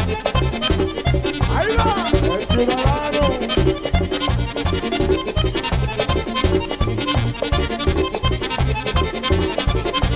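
Live band music led by a button accordion, playing an instrumental passage over bass and percussion with a steady beat. A voice calls out briefly about two seconds in.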